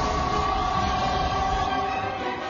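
Dramatic score holding a loud, sustained chord over a low rumble of battle sound effects.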